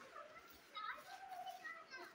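A young child's voice, faint and high-pitched, in a few short utterances or calls.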